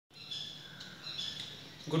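Birds chirping quietly: about three short, high calls in two seconds. A man's voice begins right at the end.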